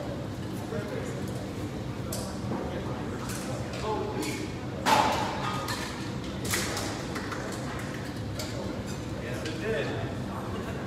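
Indistinct voices and scattered knocks and footsteps echoing in a large hall. There is a sharp clank about five seconds in, the loudest sound, and a smaller one a second and a half later.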